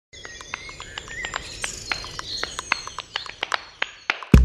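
Birds chirping and calling, thin whistled notes over a natural ambience, with many short sharp clicks scattered irregularly through it.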